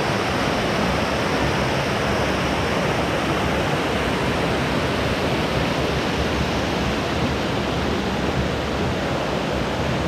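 Water of a small creek rushing over rock ledges in cascades: a steady, even rush with no breaks.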